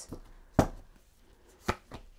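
Two short sharp taps about a second apart, from a deck of tarot cards being handled and cards put down on a surface.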